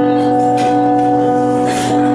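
Electronic keyboard playing sustained, held chords that shift every second or so, with no singing over them.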